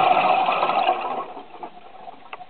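Scuba diver's exhaled bubbles rushing out of the regulator underwater, a rattling stream of bubbles that fades out about a second and a half in.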